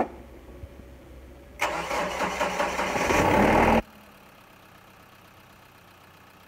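Mahindra Bolero's engine turned over on its starter motor: a loud burst of about two seconds that begins about one and a half seconds in and cuts off abruptly, without the engine settling into an idle.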